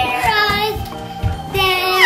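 Music with a steady beat and held tones, with a little girl's high voice singing over it in two short phrases, the second ending in a falling glide near the end.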